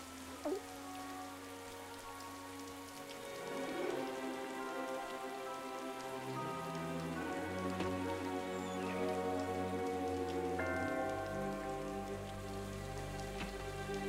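Steady heavy rain falling, with a slow, sustained film score of held chords that grows louder about three seconds in; deeper bass notes join about eleven seconds in.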